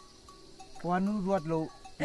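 A short pause, then a man's voice speaks a brief phrase starting about a second in.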